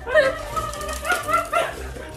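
Small puppy giving a series of short, high-pitched yips and whines that rise and fall in pitch, over background music.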